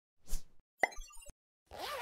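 Animated-logo sound effects: a short whoosh, then a sharp cartoon-like pop with a few small clicks, and near the end a swoosh carrying a tone that rises and falls.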